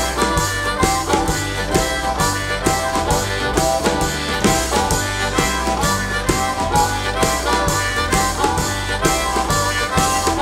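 Harmonica cupped in the hands against a vocal microphone, playing a bluesy solo over a steady, quick snare-drum beat, upright double bass and acoustic guitar.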